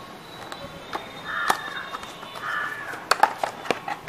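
A small cardboard charger box being handled and opened by hand, ending in a quick run of sharp clicks and taps of card near the end. Before that, two short harsh animal calls, about a second apart, sound in the background.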